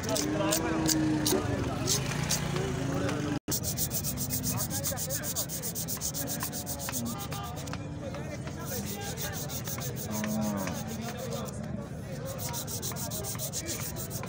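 A hand saw blade cutting through a cow's horn in fast, regular back-and-forth strokes, a dry rasping sound.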